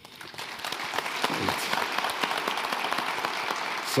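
Audience applauding, building up over the first second and then holding steady.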